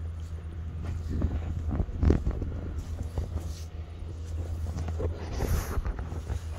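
Wind rumbling on the phone's microphone, steady and low, with scattered short crunches as it moves along a gravel track.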